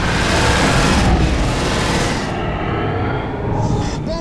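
Film sound effect of a sci-fi fighter craft flying through: a loud, dense engine rush over a deep rumble. About two seconds in, the bright hissing top cuts away and the low rumble carries on.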